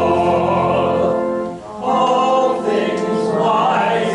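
Congregation singing a hymn together, holding long notes, with a short break between phrases about one and a half seconds in.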